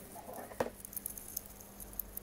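Phone handling noise: scattered small clicks and rustles, with one sharper knock a little over half a second in, as the phone is picked up and moved.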